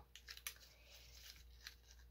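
Faint crinkling and a few small ticks of thin coffee filter paper as fingers press its ruffles down onto a glued journal page, mostly in the first half.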